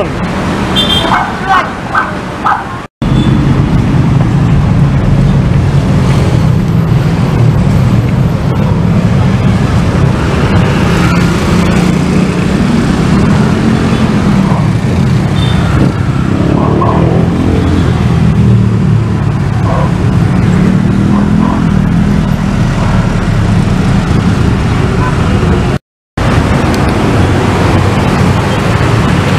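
Dense road traffic, mostly motorcycles and cars, passing close by: a loud, steady mix of engine noise that starts about three seconds in.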